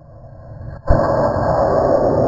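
The first-stage rocket motor of a two-stage amateur rocket igniting on the launch rail: a rising hiss that breaks into a sudden loud bang about a second in, followed by the motor firing steadily and loudly.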